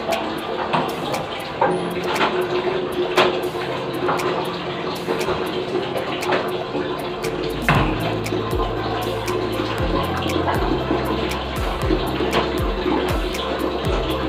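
Background music, its bass line coming in about halfway, over a continuous watery swishing with scattered clicks and knocks from a long-handled cleaning tool scrubbing a tiled restroom floor.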